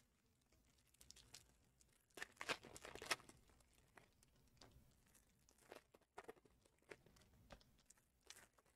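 Faint crinkling and rustling of trading-card pack wrappers being handled, with a louder burst of crinkling about two seconds in and scattered light clicks after.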